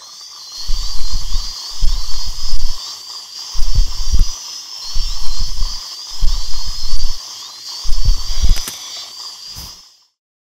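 High-speed dental drill whining steadily with a slight waver in pitch over a hiss of water spray, as it cuts into a decayed tooth. About seven deep rumbling pulses, each under a second, come roughly once a second and are the loudest part.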